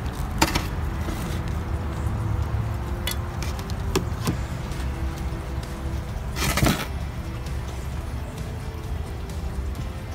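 Soft background music with steady held tones over a low hum. Over it, potting soil is added to a terracotta pot by hand, making a few light clicks and rustles and one louder scrape about six and a half seconds in.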